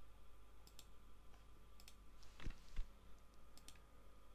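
Quiet, scattered clicks of a computer mouse, with a couple of slightly louder soft knocks past the middle, over a faint steady electrical hum.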